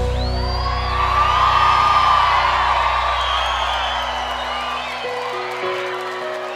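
Live band letting a held chord ring and slowly fade while a large concert crowd cheers and whoops; new soft held notes come in about five seconds in.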